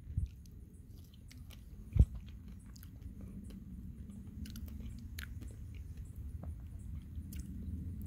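A person biting into and chewing a ripe fig, with faint wet mouth clicks and one sharp knock about two seconds in.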